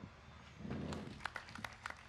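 Faint, scattered applause from a few audience members: a handful of separate hand claps over a low murmur of the audience.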